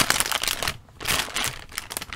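A bag of chips crinkling as it is pulled and worked open, in irregular bursts with a short pause about a second in.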